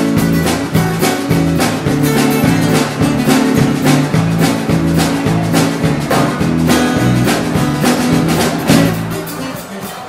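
Live country band playing an instrumental passage: strummed acoustic guitars and electric guitar over bass and a drum kit keeping a steady beat. The music falls away in the last second.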